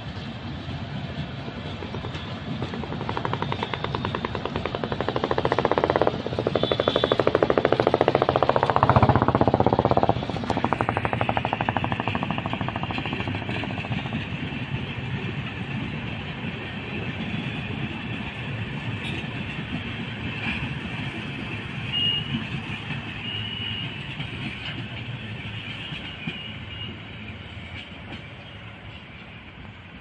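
Passenger coaches of an express train rolling past on the track: a continuous rumble and clatter of wheels on rail. It swells to its loudest a few seconds in, then fades steadily as the train draws away.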